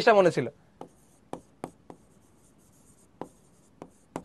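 Pen tapping and scratching on a digital writing board while a word is written: about six sharp, separate clicks spread over a few seconds, with a faint high scratch between them.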